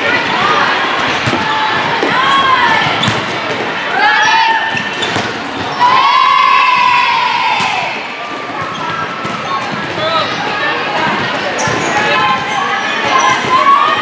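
Volleyball play: sharp hits of the ball among players and spectators calling and shouting, with a long, loud shout starting about six seconds in.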